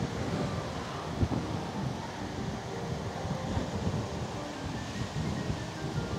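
Gusty wind buffeting the microphone: a steady rushing noise with uneven low rumbling swells.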